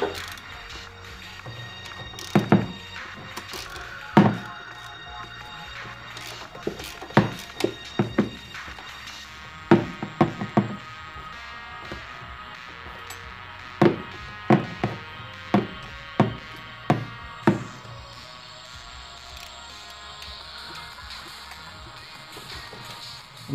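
Metal hand tools knocking and clicking against engine parts in irregular sharp strikes, some in quick clusters, over quiet background music.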